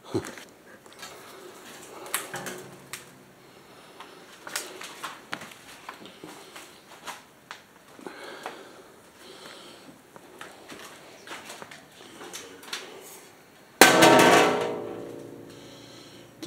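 Scattered small knocks and clicks of handling and footsteps, then near the end one loud metallic clang that rings out and fades over about two seconds, as from the metal linen hamper being struck or its lid dropped.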